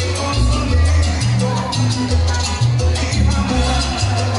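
Salsa music playing loud, with a bass line stepping between notes and a busy, steady percussion pattern above it.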